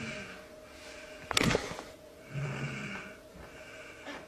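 A person's breathing noises without words: a brief low voiced sound at the start, a sharp noisy breath about a second and a half in, and a longer low voiced sound near the three-second mark, over a faint steady hum.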